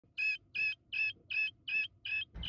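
Guinea fowl keet peeping: five short, high, evenly spaced calls at about three a second.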